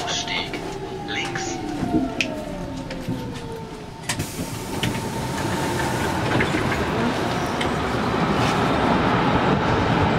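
Berlin S-Bahn electric train slowing into a station: a whine falls steadily in pitch over about four seconds as it brakes to a stop, over a steady higher tone. The noise then grows louder as the doors open onto the platform.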